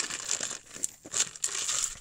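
Irregular crinkling and rustling close to the microphone, with a few short clicks.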